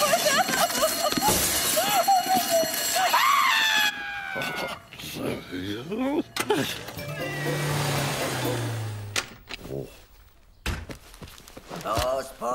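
Several cartoon cats meowing and yowling over one another for about four seconds. After a cut, a low car-engine hum that drops in pitch, under background music.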